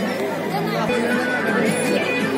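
Crowd chatter, many overlapping voices, with music playing underneath.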